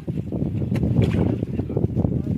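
Water sloshing and a woven plastic sack rustling as it is handled in shallow water, with a few sharp crinkles.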